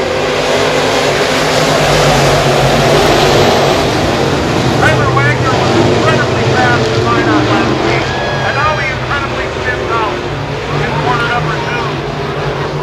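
A pack of IMCA Modified dirt-track race cars accelerating hard at the green-flag start, their V8 engines loud and continuous, loudest in the first few seconds and easing off slightly later on. A voice is heard over the engines in the second half.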